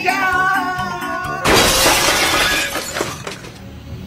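Background music, then about a second and a half in a sudden loud crash sound effect that fades away over about two seconds.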